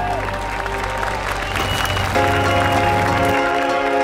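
Wedding guests clapping and applauding, with music playing throughout.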